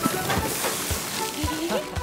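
Cartoon sound effect of a water hose spraying onto a fire: a steady sizzling hiss as the flames are put out, over background music with a light beat.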